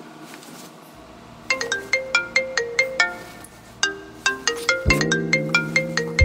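A phone alarm ringtone plays a quick, repeating melody of struck notes, starting about a second and a half in. Lower, fuller notes join near the end.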